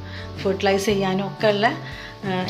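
A woman's voice talking over soft background music with steady low notes.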